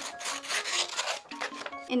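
Paper rustling and rubbing as a sheet is handled, for about the first second, over light background music.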